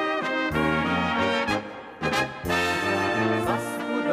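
Czech brass band (dechovka) playing a dance tune: horns carrying the melody over a stepping low brass bass line. The band drops back briefly a little before halfway, then comes in again at full strength.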